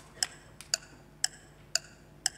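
Clock-like tick sound effect of an audience-poll countdown timer, ticking evenly about twice a second as the voting time runs out.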